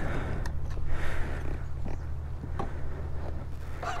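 Ducati Monster 937's L-twin engine idling steadily through its stock exhaust, with a few faint clicks.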